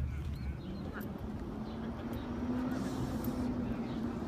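Wind rumbling on an outdoor microphone, with a steady low drone that comes in about a second and a half in and holds, rising slightly in pitch.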